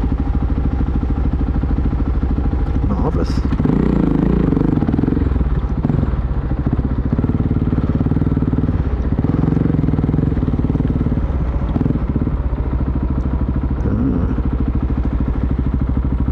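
Motorcycle engine running as the bike rides along in traffic, heard from on the bike itself; the engine gets louder about four seconds in as it pulls away, then holds a steady cruising note.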